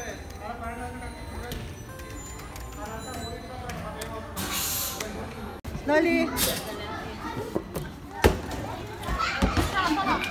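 Children's voices and play noise with music in the background. About eight seconds in comes a single sharp thump of a ball striking something.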